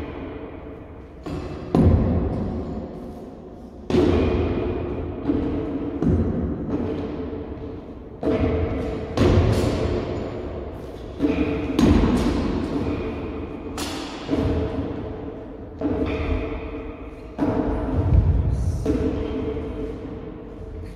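Shashka (Cossack sabre) blows landing on rubber tyres mounted on metal pole stands: a series of heavy thuds at uneven intervals, about one a second. Each one rings and echoes away slowly in a large gym hall.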